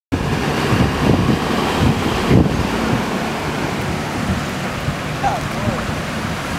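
Wind buffeting the microphone: a steady rushing noise with irregular low thumps, heaviest in the first two and a half seconds.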